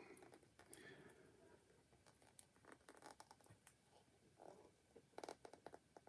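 Near silence: faint, scattered light clicks and rubbing from hands working a cast out of a small silicone mould, with a short cluster of clicks near the end.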